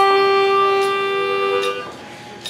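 Harmonica played through a microphone, holding one long chord that cuts off shortly before the end.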